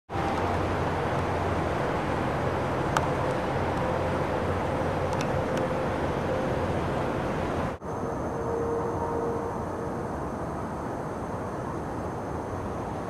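Steady low rumbling noise of a refinery flaring off gas in a power outage, heard across a neighbourhood. It drops out for an instant about eight seconds in and then carries on a little quieter.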